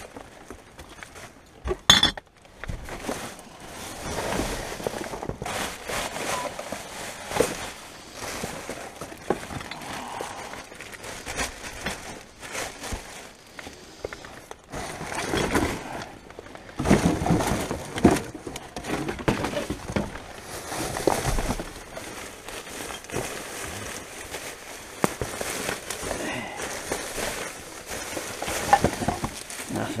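Rubbish being rummaged through by hand: cardboard cartons and plastic bags rustling and crackling in irregular bursts, with occasional clinks and knocks of containers. A sharp click comes about two seconds in.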